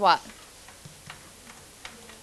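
Faint, irregular light clicks and taps of a pen stylus on an interactive whiteboard as it writes.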